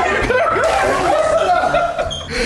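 A man laughing.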